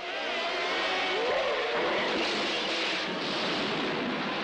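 Late-1970s Formula One cars' engines at racing speed on archive race footage: a dense, steady rushing noise with faint wavering engine tones.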